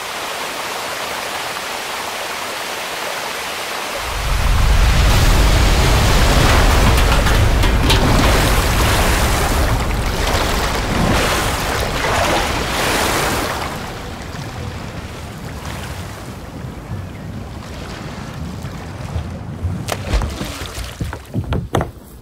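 Muddy floodwater rushing in a flash flood: a steady rush of water, joined about four seconds in by a deep rumble that lasts some ten seconds and then eases, with a few sharp knocks near the end.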